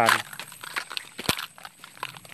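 Light crackling and rustling of dry grass as someone walks with a handheld phone, with scattered clicks and one sharp click about a second and a quarter in.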